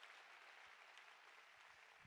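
Near silence, with faint audience applause low in the background.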